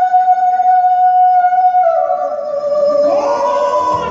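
A singer holding a long high note through the stage sound system, dropping a step in pitch about halfway through; another pitched line slides in near the end.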